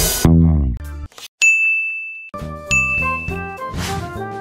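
Background music slides down in pitch and stops. After a brief gap a single high electronic ding rings for just under a second. New music then starts, with a second, similar chime.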